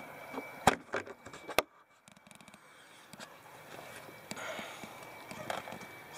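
Mazda B4000 pickup's cab door being opened: two sharp latch clicks about a second apart, followed by faint handling rustles.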